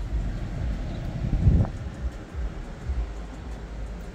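Low rumble and handling noise on the microphone as it is carried into a car's cabin, with one dull thump about a second and a half in.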